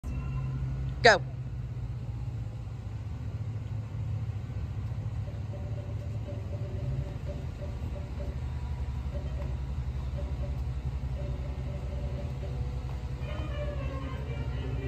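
A steady low rumble throughout, with one sharp, very loud shout of "Go!" about a second in. Music starts from a speaker shortly before the end.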